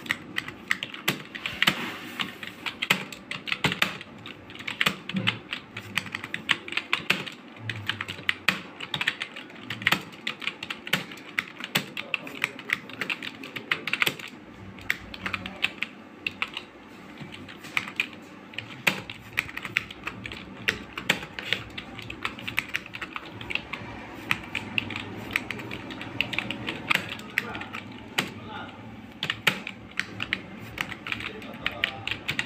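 Touch-typing on a black desktop computer keyboard: a continuous run of irregular key clicks, about two keystrokes a second.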